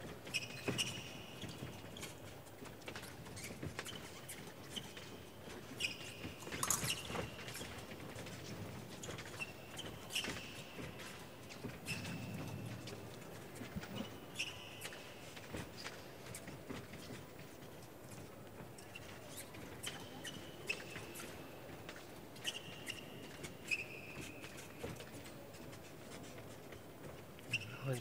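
Fencing shoes squeaking on the piste during footwork: short high squeaks every second or two, with scattered sharp taps and clicks.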